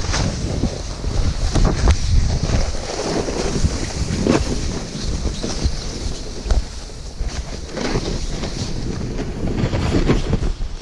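Wind buffeting an action camera's microphone while snowboarding downhill, a steady rumble mixed with the hiss and scrape of a snowboard sliding over snow.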